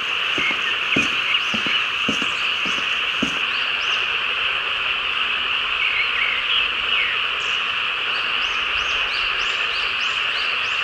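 A dense, steady chorus of frogs and insects, with short rising calls above it that grow more frequent in the second half. Soft footsteps sound about twice a second in the first three seconds.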